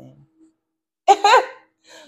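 A woman laughing briefly, one short high-pitched burst about a second in.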